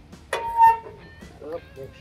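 A steel shovel knocks once against the steel firebox of an offset smoker, a single clank that rings briefly, heard under background music.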